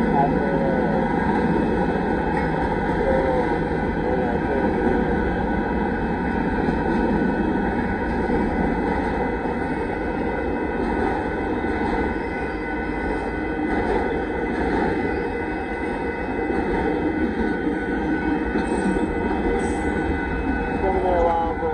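Union Pacific mixed freight train rolling through a grade crossing, a loud steady rumble and clatter of freight-car wheels on the rails.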